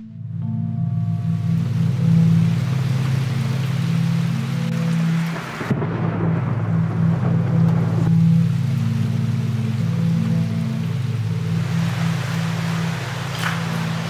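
Cinematic background soundtrack: a steady low drone under a hissing noise layer. The hiss thins for a couple of seconds about six seconds in.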